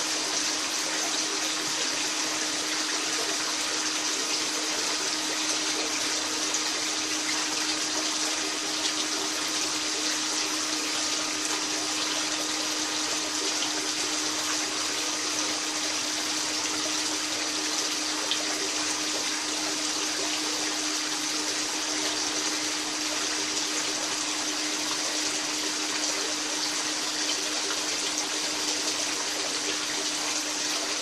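Water from a Gold Cube gold concentrator pouring steadily off its trays into a plastic tub, over the steady hum of the small pump that recirculates the water.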